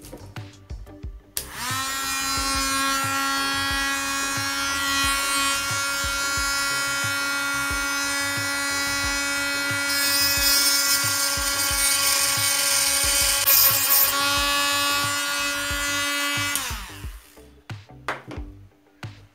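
Small handheld rotary tool motor spinning up to a steady high whine and then running down, its bit grinding against a metal coin with a harsher hiss about halfway through.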